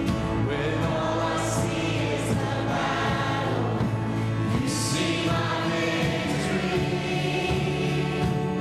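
Church choir singing a gospel hymn with instrumental accompaniment.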